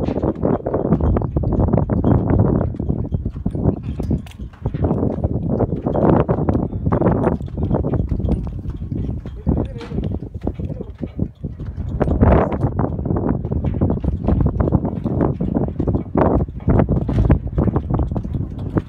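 Wind buffeting the microphone in loud, irregular gusts, mixed with scattered knocks and scuffs.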